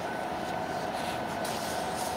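Steady room noise with a faint, even hum running under it.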